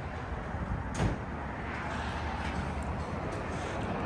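Steady background noise of an auto repair shop with a low hum, broken by a single sharp knock about a second in.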